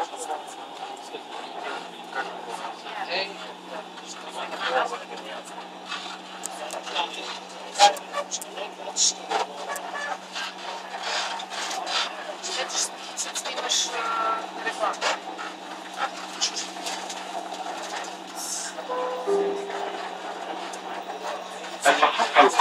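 Cabin noise inside a moving Dubai Metro train: a steady low hum with many scattered clicks and knocks, under indistinct voices.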